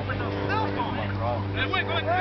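Distant shouts and short calls from players on a soccer field, over a steady low hum.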